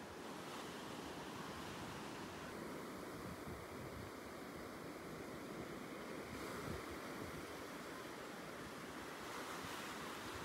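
Small waves of shallow surf washing up and draining back over a sandy beach, a steady wash of water.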